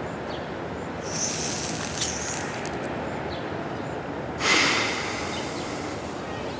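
A dog breathing out over a steady outdoor hiss: a soft hiss about a second in, then a louder breathy puff at about four and a half seconds as it blows out cigarette smoke.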